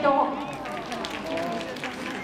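Stadium public-address announcer reading out a runner's lane, name and school.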